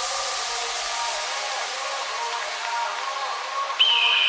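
Breakdown in a psychedelic trance track: the kick and bass drop out in the first half second, leaving a hissing noise wash over wavering synth tones. Near the end a sudden high steady synth tone comes in.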